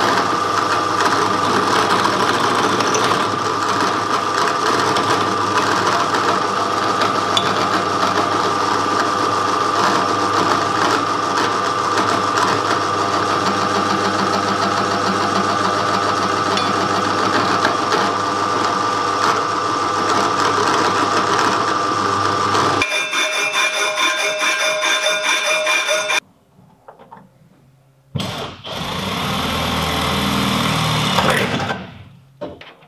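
Bench drill press running and drilling through a small metal plate, a steady motor hum with a constant high whine. About 23 s in the sound changes to a different whirring, breaks off briefly, and another loud machine noise starts near the end.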